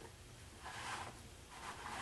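Faint rustling and handling noise off-camera over a low, steady room hum, with a brief swell a little under a second in.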